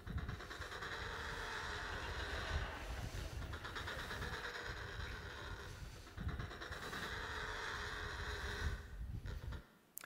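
Male Adélie penguin display calls: a long pulsing call, then a second one starting about six seconds in. This is the display a male gives at his nest to attract females.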